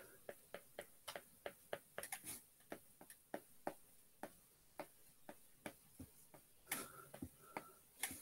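Faint, quick taps of a stylus tip on an iPad's glass screen while hand-lettering words, about two or three irregular clicks a second.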